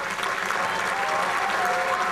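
A large crowd applauding, with a few cheering voices over the clapping.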